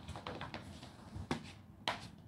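Steam mop pushed across a wooden floor, giving a few sharp, irregular clicks and knocks: a quick cluster at the start, then two louder ones in the second half.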